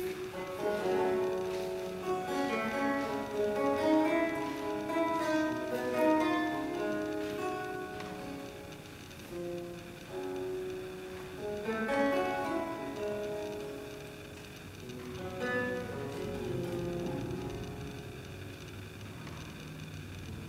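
Renaissance lute played solo, plucked notes ringing in a running line, then thinning out to a few spaced chords in the second half.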